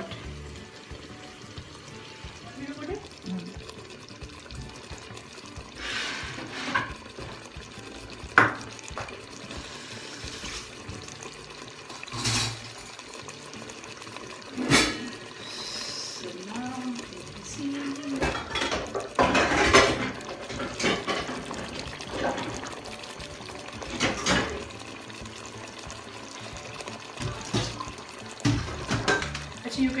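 Kitchen clatter of pots and utensils, a dozen or so sharp knocks spread through, with water running as part-cooked basmati rice is drained through a sieve.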